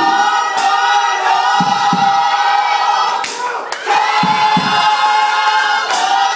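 Gospel choir singing long, held chords in several parts, with live drum hits and cymbal crashes underneath.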